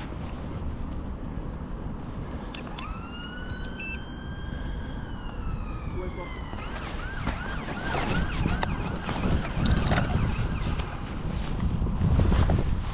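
An emergency vehicle siren: one slow wail that rises, holds and falls away, then a quick yelp of about three rises a second. Wind buffets the microphone.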